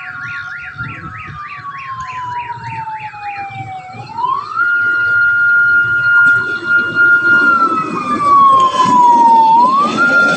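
Electronic siren on an approaching KAI rail inspection vehicle. It gives a fast warbling yelp for the first few seconds, then switches about four seconds in to a slow wail that rises, holds and falls, growing louder. A rumble of steel wheels on the rails builds underneath near the end.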